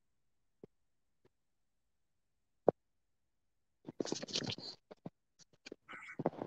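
Video-call audio breaking up over a bad internet connection: dead silence cut by a few isolated blips, then a ragged run of chopped, garbled fragments about four seconds in as the signal starts to return.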